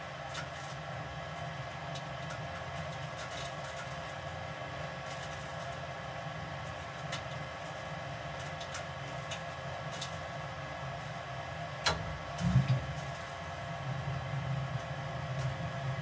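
Lennox SLP98UHV gas furnace's multi-speed draft inducer running steadily at about 70 percent speed during the pre-purge, a hum with several fixed tones. About twelve seconds in, a sharp click and a brief low burst as the burners light at the end of the pre-purge, after which the low hum grows slightly.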